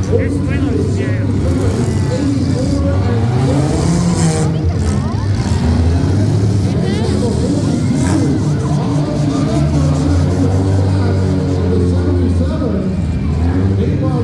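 Several demolition derby cars' engines running and revving hard in turns, their pitch rising and falling as the cars push and ram each other, over the noise of a crowd.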